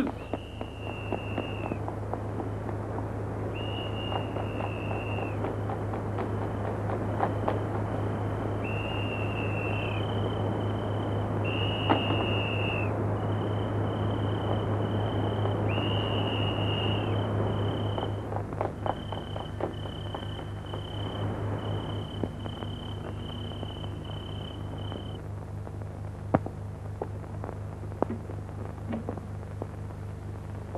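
Police whistles blown in repeated high blasts at two pitches, some long with a dropping tail and some short, over a rushing noise during a chase; the whistles stop about 25 seconds in. A steady low hum runs underneath, and scattered sharp clicks follow near the end.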